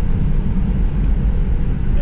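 Steady low rumble of a box-body Chevrolet Caprice Brougham under way, engine and road noise heard from inside the cabin.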